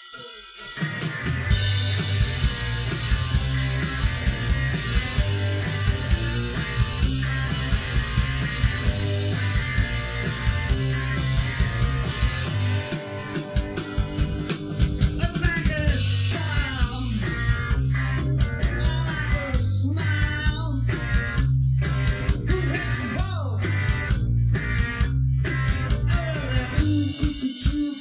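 A live rock band kicks into a pop-rock song about half a second in and plays on loud and amplified, led by an electric guitar over a heavy bass line.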